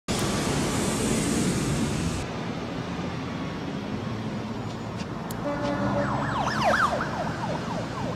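Traffic-like background rumble with a hiss that cuts off about two seconds in. From about six seconds in, a siren yelps in rapid up-and-down sweeps.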